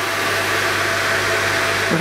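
Steady hiss of the laser cutting machine's air and fan system running, with a low mains hum underneath.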